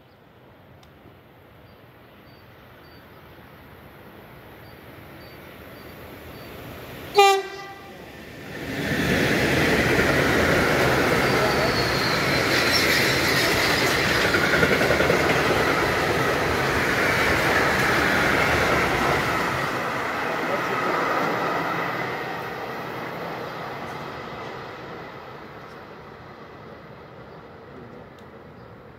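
A freight train approaches: its class 185 electric locomotive sounds one very short horn blast about seven seconds in, then a long train of tank wagons runs past at speed, with a loud steady rush of wheels on rails for about ten seconds that slowly fades away.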